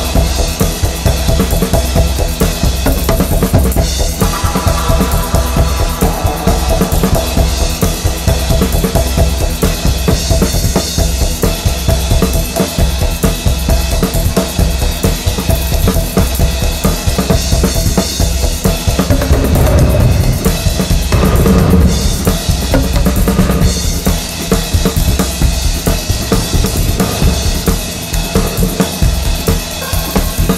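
Instrumental electronic dance music driven by a drum kit: bass drum and snare keep a steady, dense beat under sustained synth and bass layers.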